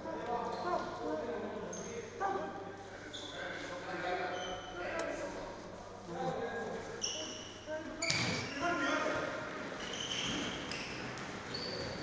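Sounds of a futsal game in a sports hall: indistinct shouting voices, short high squeaks of shoes on the court and ball bounces, with a sharp hit about eight seconds in, all echoing in the large hall.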